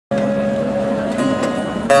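Acoustic guitar played live: chords ringing on in sustained notes, with a new strum near the end.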